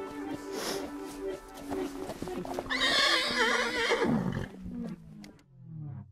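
Background music with a horse whinnying loudly in a wavering call about three seconds in; the music then fades out near the end.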